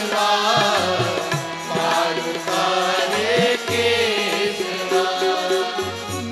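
Sikh congregation singing a devotional kirtan chant in unison, with instrumental accompaniment and a recurring low drum beat.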